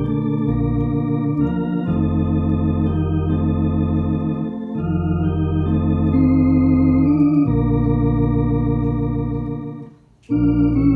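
Tokai T1 Concert electronic organ with a drawbar registration imitating a Hammond tonewheel organ, playing a slow hymn in held chords over a low bass line. The chords change every two to three seconds, and the sound breaks off briefly near the end between phrases.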